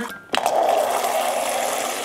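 Refrigerator door water dispenser running a stream of water into a plastic cup. The flow starts abruptly about a third of a second in and then runs steadily.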